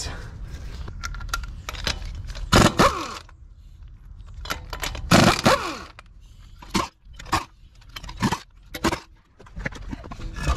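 Impact wrench running in two short bursts on a truck's wheel lug nuts, its pitch falling as it winds down after each burst. A few short sharp clicks and knocks from the nuts and tools follow.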